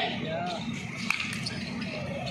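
Live basketball play: spectators' voices with a voice at the start, and court sounds of the ball on the concrete court, including a sharp knock about a second in.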